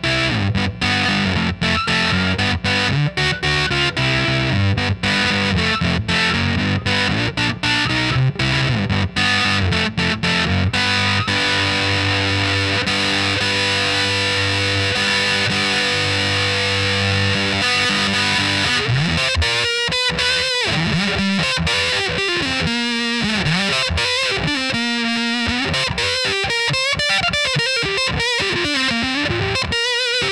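Electric guitar on the bridge pickup played through a Sola Sound Tone Bender Mk IV germanium fuzz pedal, with a thick distorted tone. It starts with choppy rhythm chords, holds a sustained chord, then from about 19 seconds in switches to single-note lead lines with bends and vibrato.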